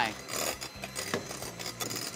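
Electric 5-speed hand mixer running on high, its beaters whipping egg whites and sugar in a glass bowl as they turn into meringue.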